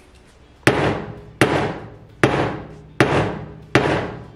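A rubber mallet striking the end of a pointed tool held against a metal hairpin, punching a hole in it: five sharp knocks, about one every 0.8 s, each fading out quickly.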